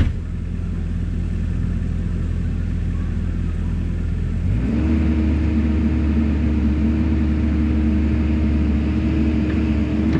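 Bobcat E50 compact excavator's diesel engine running steadily, then speeding up about halfway through to a higher, steady pitch as the machine works.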